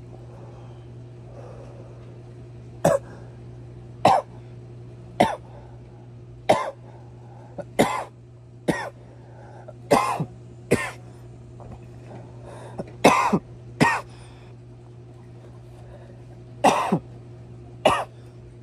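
A man coughing from cannabis joint smoke: about a dozen short coughs in bouts, starting about three seconds in and coming roughly a second apart, with short pauses between bouts.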